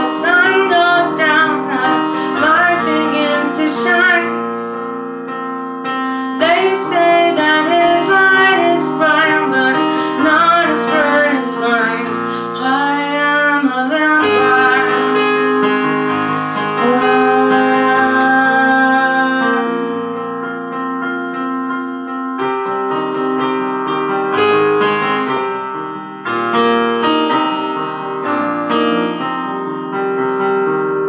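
A woman singing solo, accompanying herself with held chords on an electronic keyboard played with a piano sound. The voice comes in phrases with short breaks while the keyboard chords carry on.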